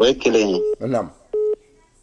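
Two short, steady electronic beeps about three quarters of a second apart, the second a little longer, between brief bits of a voice.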